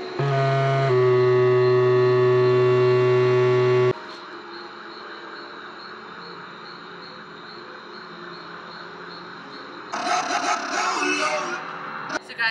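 Electronic infrared-beam instrument, whose hand-distance sensors set its pitch, sounding a loud, steady, buzzy tone. The tone steps to a different pitch about a second in, holds, and cuts off abruptly about four seconds in. Quieter steady background noise follows, then a louder, choppy sound near the end.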